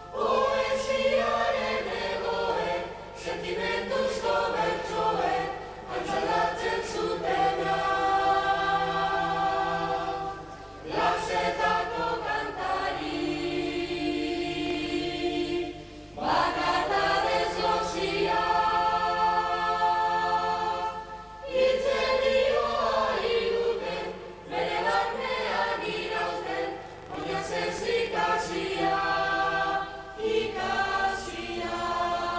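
A young mixed choir singing in parts, in held phrases broken by short pauses every few seconds.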